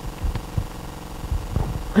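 A pause between speakers: low room hum with a few faint soft knocks.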